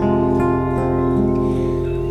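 Live band accompaniment led by acoustic guitar, holding a steady chord between the vocal lines of a slow French chanson.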